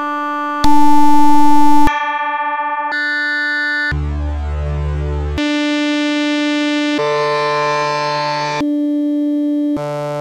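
A string of held electronic pitch samples, each one to one and a half seconds long, cut abruptly from one to the next at different pitches and timbres. The loudest starts about a second in, and one near the middle has a deep bass under it.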